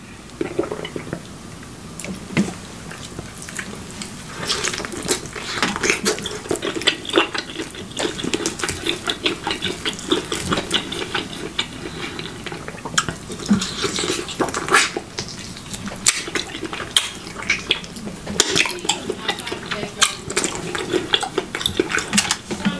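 Close-miked wet chewing and lip smacking of ribeye steak, a fast, irregular run of small mouth clicks.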